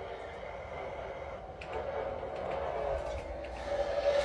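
Quiet steady room hum with a low rumble, with a few faint light taps as a carnelian crystal tower is handled.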